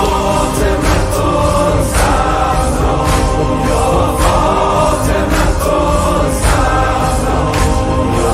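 A large crowd chanting a Persian noha in unison, with a male reciter's amplified voice, over rhythmic chest-beating strikes about once a second.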